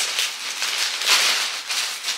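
Rustling of clothes and packaging being rummaged through by hand, in uneven swells with the loudest about a second in.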